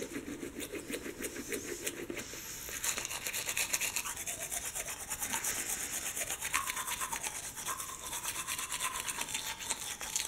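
Manual toothbrush scrubbing teeth in quick, rhythmic back-and-forth strokes.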